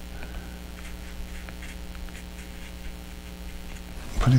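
Steady electrical mains hum, with faint, irregular soft scratches of a watercolor brush working on paper.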